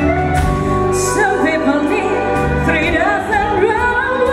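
A woman singing a slow melody with wavering vibrato, backed by a live band on stage.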